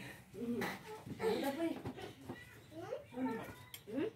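People's voices talking, with a laugh about two seconds in, and a single light clink near the end, like a dish being set down.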